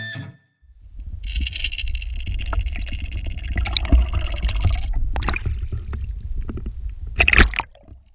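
Water sounds: a low churning rumble with gurgling, a hissing wash for about the first half, and a sharper splash near the end.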